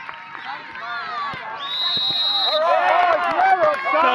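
Spectators shouting over one another as a goal goes in, with a referee's whistle blown once and held for about a second, the referee's call of offside that disallows the goal. The shouting grows louder after the whistle.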